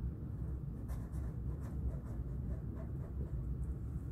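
Black felt-tip marker writing on a paper sticky note: a run of short, faint scratchy strokes starting about a second in, over a steady low hum.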